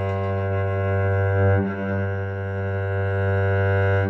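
Cello played with long bow strokes on an open string, one steady low note. The bow changes direction about two seconds in, with a brief dip in the tone before it sounds again.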